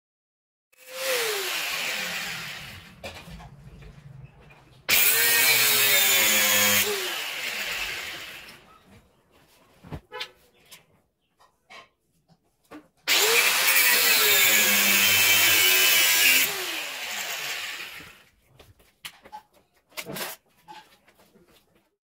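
Handheld angle grinder cutting through the steel bars of a window grill. It runs three times: a shorter run near the start, then two loud cuts of about two and three seconds. The motor's pitch drops as the disc bites and then winds down after each cut, with a few light knocks in between.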